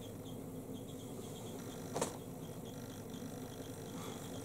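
Makeup brush being wiped clean of concealer: a faint, soft, rhythmic brushing at about four strokes a second, with one sharp click about two seconds in.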